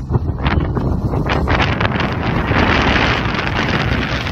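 Strong gusting wind buffeting the phone's microphone: a loud, heavy rumble throughout, with a gust swelling about two and a half seconds in.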